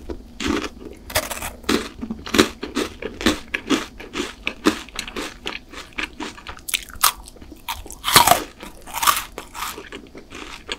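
A chocolate bar being bitten and chewed close to the microphone, with many sharp, irregular crunches throughout; the loudest crunches come about eight seconds in.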